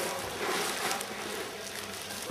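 Bagged three-way mix garden soil pouring out of a plastic bag into a wheelbarrow: a steady rushing hiss with crinkling of the bag, loudest in the first second.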